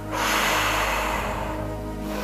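A woman's long exhale blown out through pursed lips, emptying the lungs as the first step of Bodyflex diaphragmatic breathing; it starts just after the beginning and fades out after about a second and a half. Soft background music with steady held notes plays underneath.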